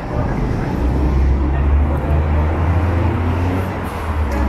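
A vehicle engine on the street runs with a deep, steady rumble that swells about a second in and holds, over general city traffic noise.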